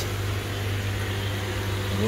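Steady low electrical hum with an even hiss, unchanging throughout.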